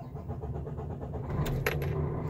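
KAMAZ truck's diesel engine cranking on the starter with a fast, even churn, then catching about a second and a half in and settling into idle. The engine has become hard to start, needing long cranking instead of firing at once.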